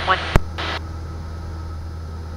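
Cessna 172's engine as a steady low drone heard through the cockpit intercom, with a sharp radio click and a brief burst of static about half a second in, as the radio transmission ends.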